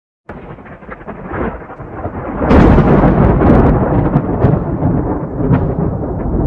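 Thunder: a rolling rumble that starts suddenly, builds, and breaks into its loudest crackling peal about two and a half seconds in, then rumbles on.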